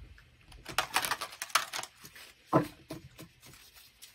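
Deck of oracle cards being shuffled by hand: a quick run of papery card snaps and flutters about a second in, then a few more near the middle.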